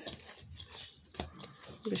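Hands kneading a soft yeast dough in a glass bowl: low, uneven squishing and pressing noises with a couple of faint knocks.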